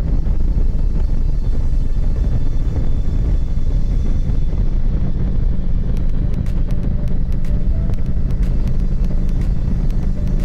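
Motorcycle engine running steadily at cruising speed, with wind rushing past the fairing. From about six seconds in, a scatter of sharp ticks sounds over it.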